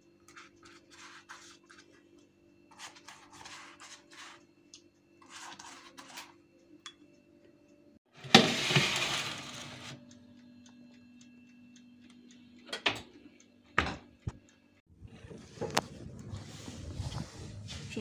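Soft swishing strokes of a silicone pastry brush on rolled lavash on a baking tray, over a low steady hum. About eight seconds in comes a loud clatter as the metal tray goes into the hot oven, followed a few seconds later by two sharp clicks. The last few seconds hold a denser steady rustling noise.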